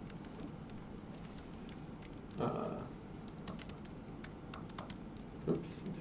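Typing on an Apple MacBook keyboard: a run of light, irregular key clicks as a command line is entered.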